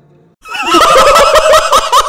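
A group of men suddenly bursting into loud shouts and laughter about half a second in, several voices wavering over one another.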